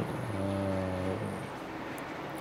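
A man's drawn-out hesitation sound: one level 'uhh' held for about a second, mid-sentence.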